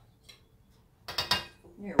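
A wire whisk clinking and scraping against glass mixing bowls as flour is knocked out of one bowl into the other. It comes as a brief cluster of clinks about a second in.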